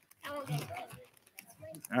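Faint, indistinct voices with a few light crinkles and clicks from a bag of pretzels being handed round.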